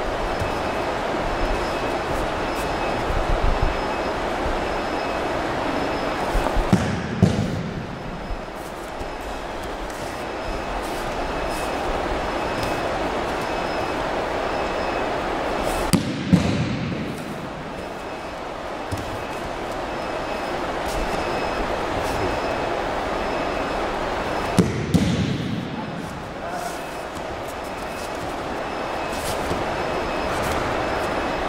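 Aikido partner thrown and landing in breakfalls on a gym mat: three heavy thuds about nine seconds apart, each a quick double impact of slap and body landing, over a steady room noise.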